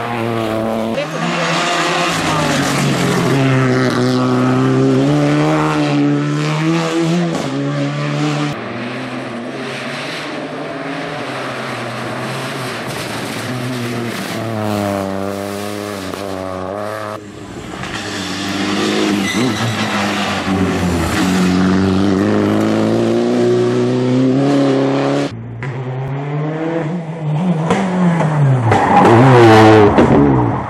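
Rally car engines revving hard and changing gear as the cars race past at speed, pitch climbing and dropping with each shift. Several passes follow one another, with the loudest, rising rev near the end.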